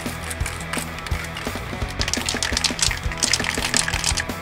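Aerosol can of spray primer shaken side to side, its mixing ball rattling in quick clusters of sharp ticks, most busily in the second half, over background music with a steady beat.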